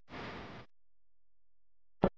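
A woman crying: one short sobbing breath in the first half-second, then near silence, and a sharp catch of breath right at the end.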